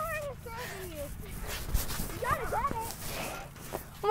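Faint, distant voices of kids calling out, in two short stretches, near the start and again past the middle.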